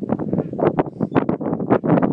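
Wind buffeting the microphone on an exposed clifftop: a loud, uneven rumble that flutters rapidly.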